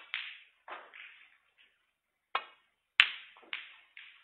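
Snooker balls clicking: the cue striking the cue ball and balls knocking together, a series of sharp clicks with the loudest and sharpest about three seconds in.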